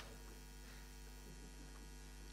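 Low, steady electrical mains hum with a row of even overtones, heard at a very low level in a pause with no speech. There is one small click at the very start.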